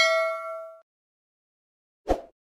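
Subscribe-button animation sound effect: a click followed by a single bell-like ding that rings and fades out within the first second.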